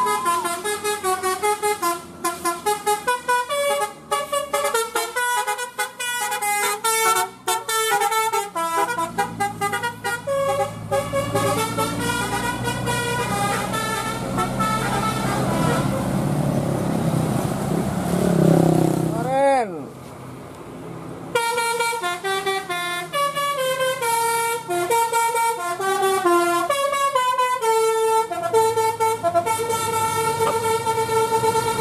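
Tour bus telolet horn playing a stepped, multi-note basuri melody. In the middle the melody gives way to bus engine and traffic noise, with a quick swoop in pitch and a brief drop, then the horn tune starts again.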